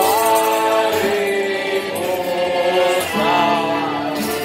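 Men's voices singing a traditional Sicilian folk song together over a piano accordion, in long held notes, with a new phrase starting about three seconds in.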